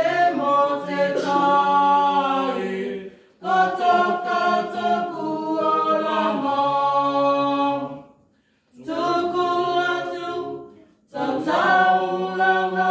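A small mixed group of men and women singing unaccompanied in harmony, reading from song sheets. The voices hold long notes in phrases, with brief pauses for breath about three, eight and eleven seconds in.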